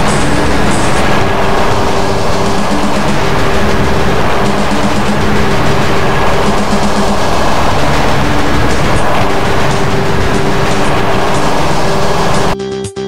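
Loud, steady rushing noise with faint held low tones underneath, a cartoon sound effect.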